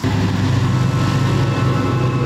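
Heavy truck going along a road, its engine a loud, steady low drone.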